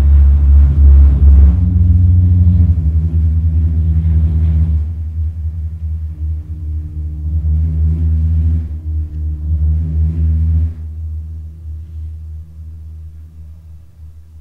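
Deep electronic bass drone with sustained low synthesizer tones layered above it, fading away over the last few seconds.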